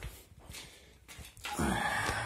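Quiet room tone, then about one and a half seconds in a man lets out a long, breathy 'fú' sigh.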